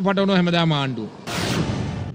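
A man's voice ends about a second in, followed by a sudden burst of noise, a whoosh-and-boom transition sound effect that fades away, as a TV news bulletin cuts to its station bumper.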